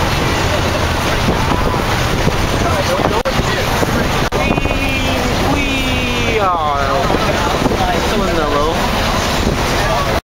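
School bus cabin on the move: loud, steady engine and road noise with wind rushing through the open windows. Partway through, a voice calls out with sliding, rising and falling pitch.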